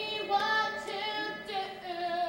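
Young female voices singing a show tune on stage, with held, sliding notes.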